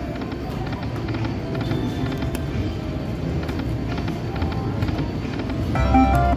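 Video slot machine playing its game music and reel-spin sounds over a steady casino-floor murmur. Near the end there is a short, louder burst of chiming tones as a small win lands.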